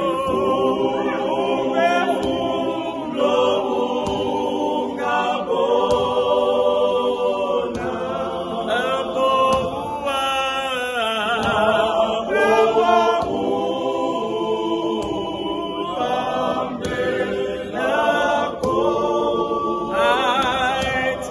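A choir singing a church hymn.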